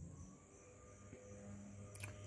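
Near silence: faint outdoor background with a faint steady hum.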